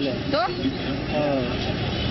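People talking over a constant background of roadside traffic noise.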